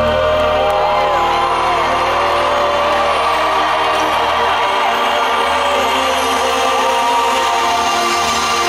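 Live rock band holding the sustained closing chords of a song in an arena, with the crowd cheering and whooping over it. The deep bass drops away about halfway through.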